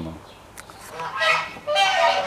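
Geese honking: a run of nasal honks about a second in and another near the end.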